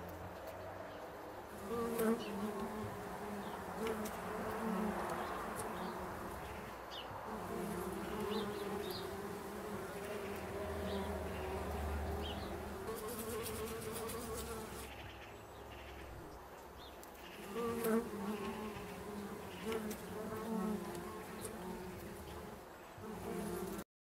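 Bumblebees buzzing at the entrance hole of a wooden bee box where they have set up a nest, a low hum that swells and fades as they come and go. The buzz is loudest about two seconds in and again near the end, then cuts off suddenly.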